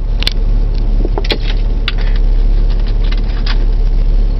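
A car's steady low engine and road rumble, heard from inside the cabin while driving, with a few brief sharp clicks and rattles.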